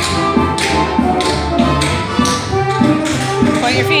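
Tap shoes clicking on the floor as two dancers tap, over recorded music with a steady beat.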